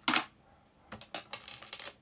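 Handling noise close to the microphone: a loud brush at the start, then a quick irregular run of light clicks and taps, like small objects being picked up and set down.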